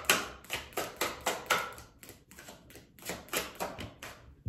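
A tarot deck being shuffled by hand: a quick, irregular run of card slaps and clicks, softer for a stretch in the middle.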